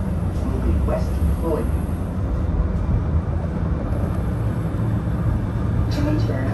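Busy high-street ambience: a steady low rumble of traffic and wind, with faint voices of passers-by about a second in.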